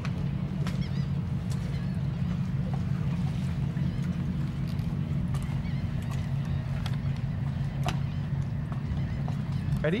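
Boat engine running with a steady low drone, heard on board and heavily bass-boosted in the recording.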